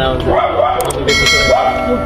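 Voices over background music, with a bright, ringing bell chime starting about a second in: an on-screen subscribe-button sound effect.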